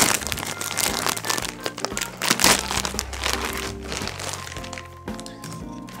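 Crinkly packaging around a plush toy being opened by hand, a dense run of crackles and rustles, thickest in the first half, over background music.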